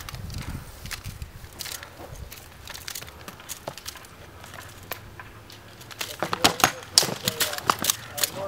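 Practice swords striking shields and armour in a sparring bout: scattered light knocks, then a quick flurry of loud, sharp clacks starting about six seconds in.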